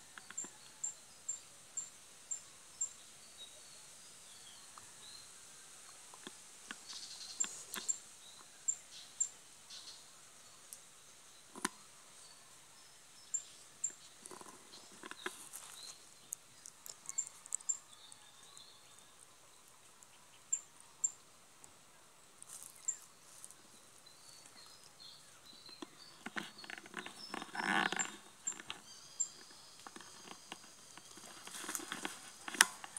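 Wild birds calling: short, high-pitched chirps in quick runs of several a second that come back again and again, with lower warbling notes between. Near the end, a louder burst of rustling and crackling in dry leaves or undergrowth.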